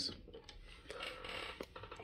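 Faint handling sounds as small rubber bag-clip figures with metal keyring clips are picked up from a desk, with a few light clicks.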